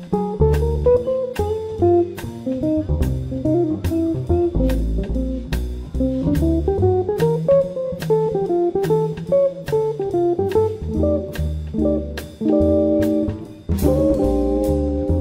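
Live band playing an instrumental jazz passage: a guitar melody of quick notes over bass guitar and a steady drum beat.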